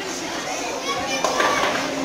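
Background voices in a large echoing hall: children chattering and calling out.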